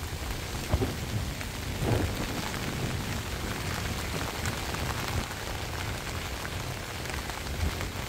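Heavy typhoon rain falling steadily on flooded rice paddies, with a few sharper drop hits and a low rumble underneath.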